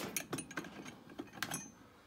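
Small sharp metallic clicks and ticks as screws are set into the metal ring on top of a plastic vending-machine globe and twisted by hand to start them: a quick run of clicks at first, a few more about a second and a half in, then quieter.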